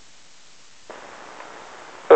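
Steady hiss of an airband VHF radio receiver between transmissions. About a second in, the hiss turns brighter and a little louder as a transmitter keys up and its open carrier comes through.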